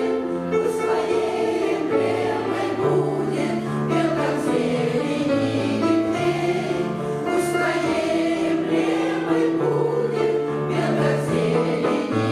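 A women's choir of older voices singing in several parts, the notes long and held.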